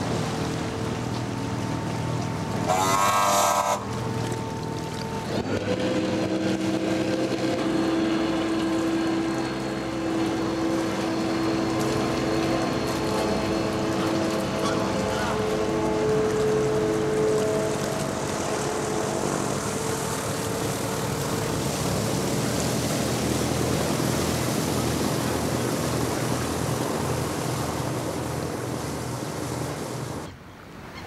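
Pleasure boat's engine running steadily as the boat cruises past on the river, with a short, louder pitched sound about three seconds in.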